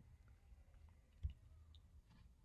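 Near silence: room tone, with one faint low thump just past a second in.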